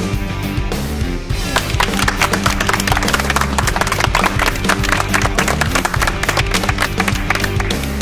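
Background rock music, with a small group of people clapping over it from about a second and a half in.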